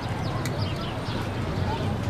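Many small birds chirping rapidly in the park trees, over a steady low hum and faint distant voices.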